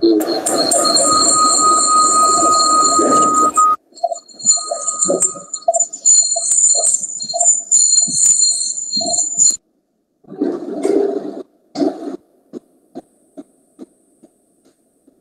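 Noisy, distorted sound from a participant's open microphone on a video call, with steady high whistling tones over it. It breaks off abruptly into short dropouts and ends in a few faint clicks.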